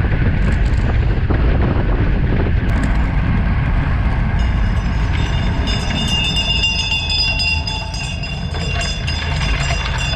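Wind and road rumble on a road bike's handlebar camera at race speed. From about four seconds in, as the rider stops pedalling and slows, a high-pitched ringing buzz of several steady tones with rapid fine ticking joins in and grows louder.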